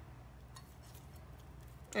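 Quiet room with a steady low hum and a few faint light ticks as chopped herbs are sprinkled by hand over chicken in a slow cooker. A woman's voice starts right at the end.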